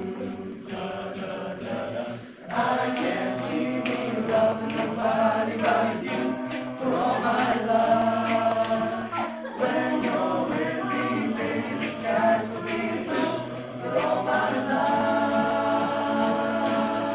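High school a cappella choir singing in harmony, with held low bass notes under the upper voices. The sound thins briefly about two seconds in, then the full choir comes back in.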